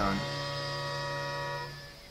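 A single held chord of soft background music, steady and then fading out near the end.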